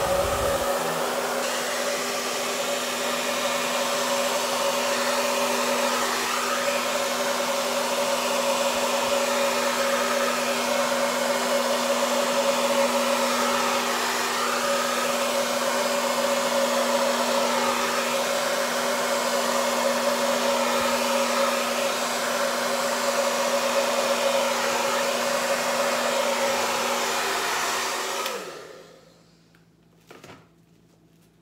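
Large hair dryer running on the cool-air setting at medium fan speed: a steady motor hum with rushing air. Near the end it is switched off and the motor winds down.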